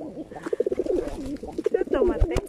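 Feral rock pigeons cooing close to the microphone, a run of low rolling coos in quick pulses.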